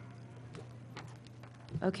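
A few faint taps and clicks from papers being handled and put down at a table microphone, over a steady low hum; a man says "Okay" near the end.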